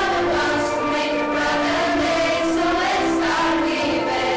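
A teenage vocal group singing together into microphones, with held notes that move from one pitch to the next every half second or so.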